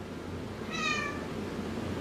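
A cat gives one short meow that falls slightly in pitch, over a low steady background hum.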